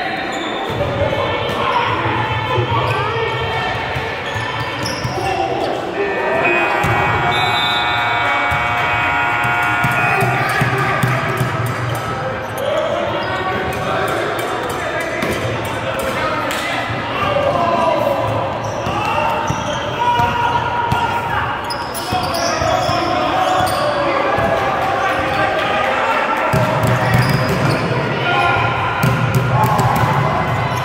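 Basketball game in a gym: a ball bouncing on the court floor and players' voices calling out, echoing in the large hall. A held pitched sound runs for a few seconds in the first third.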